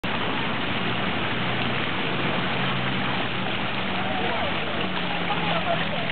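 Steady rushing of water from a water-park fountain and its shallow channel running over pebbles, with faint voices in the background.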